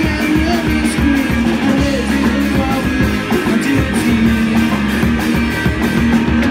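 Live rock band playing: two electric guitars, electric bass and drum kit, loud and even, with a steady drum beat.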